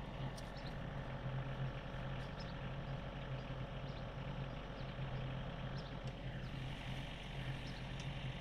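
A steady low engine hum, with a few faint ticks over it.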